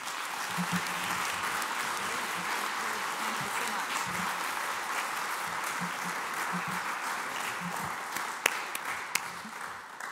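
Audience applauding at the end of a talk, a steady dense clapping that thins out near the end, with a few separate louder claps.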